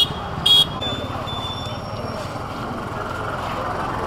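Street traffic noise with people talking in the background, and a short vehicle horn beep about half a second in.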